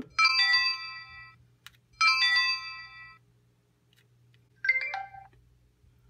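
PenFriend 2 talking label pen playing electronic signal tones through its small built-in speaker as a voice label is set to record: two identical chimes about two seconds apart, each fading over about a second, then a short stepped beep near the end.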